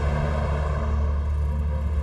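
Steady low rumble of city road traffic as cars drive past, under a sustained low music drone.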